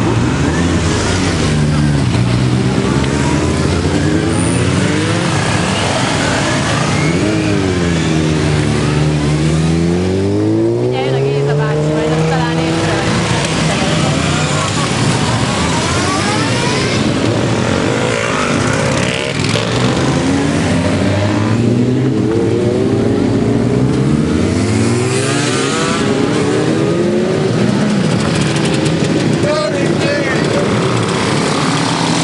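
A procession of motorcycles riding past one after another, engines revving, their pitch rising and falling again and again as each bike goes by.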